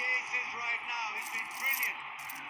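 Cricket TV commentary, a commentator's voice over background noise, played through a phone's small speaker and sounding thin.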